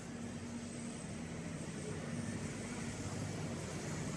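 Steady low rumble and hum of city street noise, a few low steady tones under a broad wash of sound, slowly getting a little louder.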